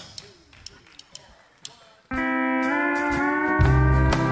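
A near-quiet pause with a few faint clicks, then about halfway through a steel guitar starts the intro of a country song with held, gently sliding chords. A bass line and the band join near the end.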